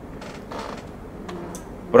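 A faint creak during a pause in the room, then a man's voice starts again right at the end.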